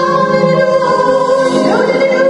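A Bollywood song played live by a band with singing: long held notes, with an upward slide in pitch near the end.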